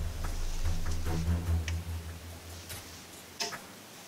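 A few light, sharp metal clicks from a screwdriver being worked into an ATX power-supply connector to jump the green power-on wire to ground, over a low hum that fades out about two-thirds of the way through.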